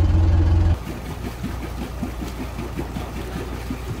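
A sailboat's inboard engine idling: a loud, steady hum inside the cabin. Less than a second in, the sound drops sharply to a quieter idle heard from outside the hull, with cooling water splashing from the exhaust outlet.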